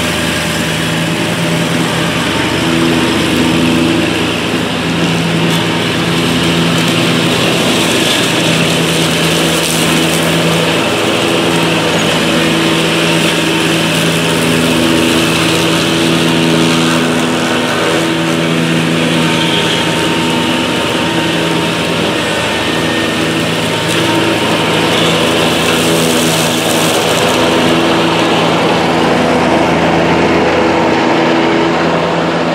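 Scag Cheetah zero-turn mower running steadily, its engine and spinning cutting deck working as it drives through a dense clump of tall, thick weeds.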